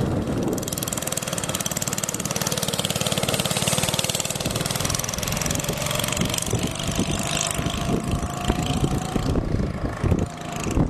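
Go-kart's small engine running steadily as the kart drives, with a faint whine rising slightly in pitch through the second half.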